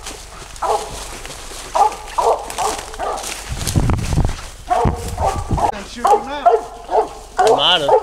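A squirrel-hunting dog barking at a tree in short repeated barks that come in clusters of two or three: a treed bark, signalling that a squirrel is up the tree. A low rumble sounds about halfway through.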